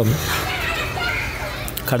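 Indistinct background chatter of several voices, with the tail of a man's spoken word at the very start.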